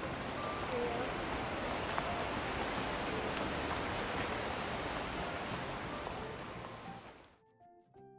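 Steady rush of creek water running over rocky rapids, with soft background music laid over it. The water sound cuts off abruptly about seven seconds in, leaving only the music.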